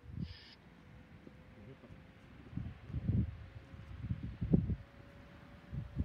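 Wind buffeting the microphone in irregular low thumps, strongest about three and four and a half seconds in. Underneath runs a faint steady whine from the distant approaching electric freight train, edging slightly higher in pitch.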